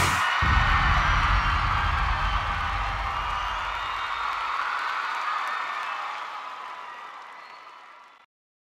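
Large concert crowd cheering, screaming and whistling just after the music stops, fading out steadily over several seconds.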